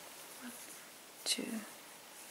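A voice softly counting "two" about a second in, otherwise quiet room tone.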